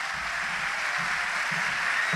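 Audience applauding, a steady even clapping.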